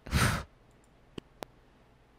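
A woman sighs once, a short breathy exhale in the first half-second, followed by two faint clicks.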